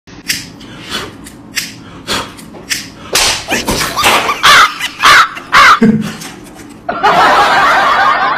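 A series of sharp slap-like clicks, roughly two a second, followed by loud high-pitched laughter.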